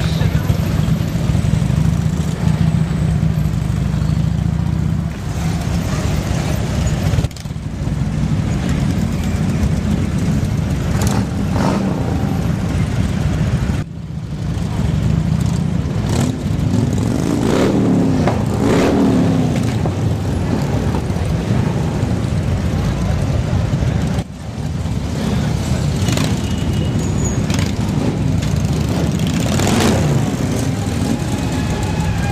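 Harley-Davidson V-twin motorcycle engines running in a slow-moving group, a steady low rumble. A few revs rise and fall in pitch a little past halfway through.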